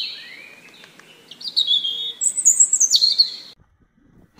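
Birds singing: a run of high chirps and whistled, falling phrases, loudest in the second half, that cuts off abruptly about three and a half seconds in.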